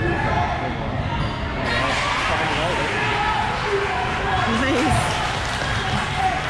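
Basketball game in a gym: a ball bouncing on the hardwood court, mixed with the scattered shouts and chatter of players and spectators.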